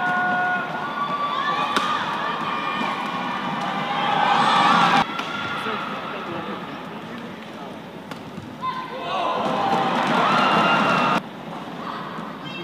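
Badminton rally sounds: racket strikes on the shuttlecock, shoes squeaking on the court and raised voices from players and crowd. The sound swells twice as points end and cuts off abruptly each time, about five seconds in and again near the end.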